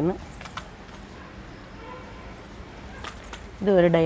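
A few light clicks in a quiet stretch, then a voice starting about three and a half seconds in.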